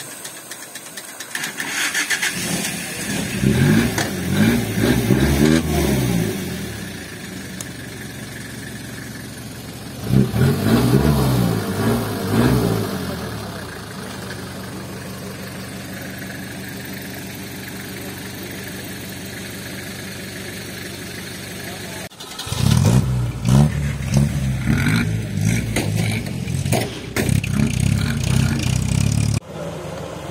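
Off-road UAZ engine revving in uneven bursts, rising and falling, with a steadier running stretch in the middle and abrupt changes where the footage is cut. At the very start there is a short hiss of water poured onto a smouldering campfire log.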